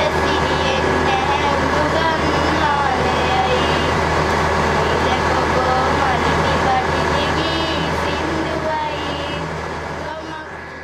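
Several girls singing together in unison, unaccompanied, over a steady low hum; the sound fades out near the end.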